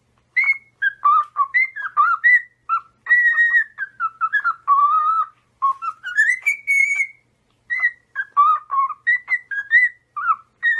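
A cockatiel whistling a warbling song of short whistled phrases, with a long rising glide about six seconds in and a brief pause soon after.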